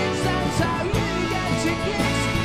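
Live rock band playing: electric guitars and drums, with a brass section of trumpet, trombone and saxophone.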